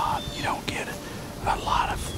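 A man speaking in a low whisper, in short phrases.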